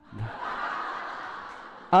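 Audience laughing together in a lecture room: a dense wash of many voices that rises at once and slowly fades away, with one man's voice breaking in loudly at the very end.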